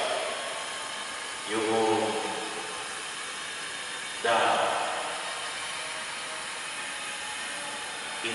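A man's voice speaking into a microphone, in two short phrases about a second and a half in and about four seconds in, with pauses between them over a steady hiss.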